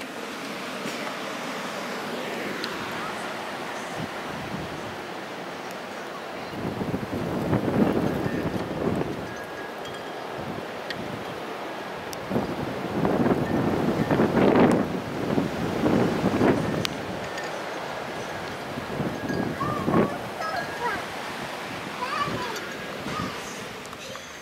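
Blizzard wind buffeting the microphone: a steady rushing roar that swells in stronger gusts about a third of the way in, through the middle and again near the end.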